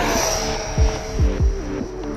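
Electric ducted fan of a foam RC jet (Wemotec Mini Fan EVO) flying past, a rushing whine whose pitch drops as it goes by. It sits under electronic music with a repeating kick-drum beat.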